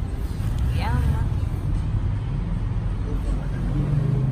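Street traffic rumbling steadily, with a brief voice about a second in.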